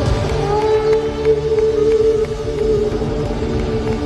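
Live rock band in an arena: an electric guitar holds a long note that bends slightly, over drums and bass.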